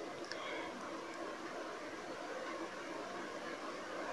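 Faint, steady hiss of liquid cooking as thick masala water is poured into a pan of hot oil and tempered spices on a gas stove.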